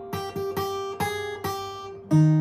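Capoed steel-string acoustic guitar played fingerstyle: a handful of picked notes, about one every half second, each ringing on over a sustained lower note. It is the vocal melody line being picked out within the chords.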